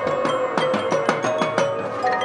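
High school marching band playing. Mallet percussion and drums strike a run of quick, even strokes, about six a second, over held notes, and the run stops shortly before the end.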